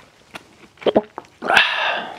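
A man drinking soda from a cup: a few short swallowing sounds, then near the end a loud, pitched throat sound after the drink, lasting about half a second.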